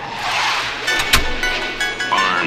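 Sound effects opening a rap track: a loud noisy whoosh, then two sharp cracks about a second in as the instrumental beat's steady tones come in.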